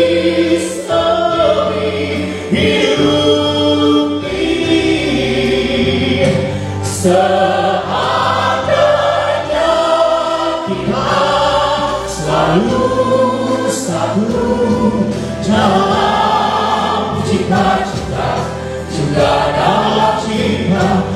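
A man sings a Christian worship song into a microphone over instrumental accompaniment, amplified through a PA.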